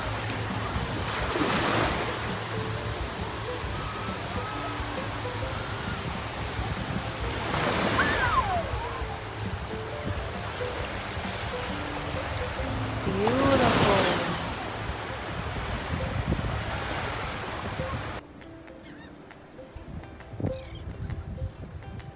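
Small ocean waves washing and breaking on the shore, swelling louder three times as waves come in, with soft background music of steady held notes underneath. About 18 seconds in, the surf cuts off abruptly and only quieter music carries on.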